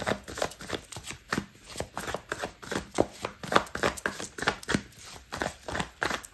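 A deck of tarot cards being shuffled by hand: a quick, irregular run of soft card slaps and flicks, several a second.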